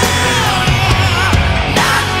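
Rock music from a band recording: electric guitars and drums, with a pitched lead line gliding and bending.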